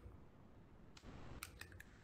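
Near silence, with a few faint clicks of an eggshell being pulled apart by hand over a mug in the second half.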